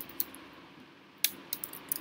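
Keystrokes on a laptop's built-in keyboard: one click shortly after the start, then a quick run of clicks in the second half as a word is typed.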